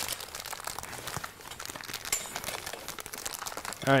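Plastic wrapping crinkling as it is worked off a reflector frame pole, mixed with the crumpled metallic reflector fabric rustling as it is handled: a steady run of small crackles.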